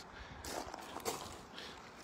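Faint rustling and crunching of gloved hands raking through loose potting soil on a plastic tarp. It picks up about half a second in and fades out after a second or so.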